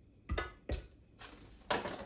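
A few short, soft knocks as dates are dropped into the stainless steel jug of a VEGA PUNK nut milk maker.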